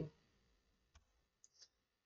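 Near silence: room tone, with a faint click about a second in and another faint tick a little later.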